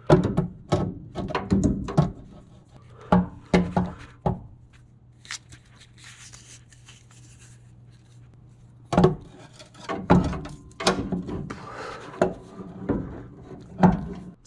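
Replacement starter motor knocked and shifted against the bellhousing and engine block of a 351 Windsor as it is worked into place by hand. Irregular metal clunks and knocks come in clusters over the first few seconds and again in the second half, with a quieter stretch in the middle.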